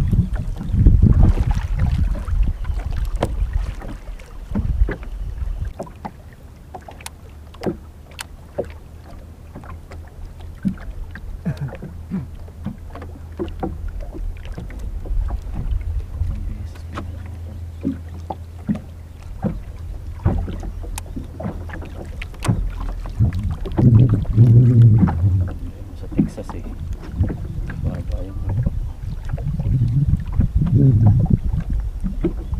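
Wind buffeting the microphone and water slapping against a small outrigger fishing boat on choppy water, with scattered light clicks and knocks. The wind rumble is heaviest in the first few seconds.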